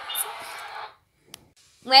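A woman laughing breathily, stifled behind her hand, which cuts off abruptly about a second in. A short silence with a single faint click follows, then her voice starts at the end.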